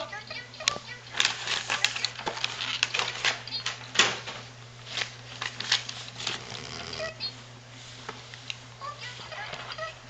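Buttons on a plastic Elmo toy phone being pressed over and over, a run of sharp, irregular clicks.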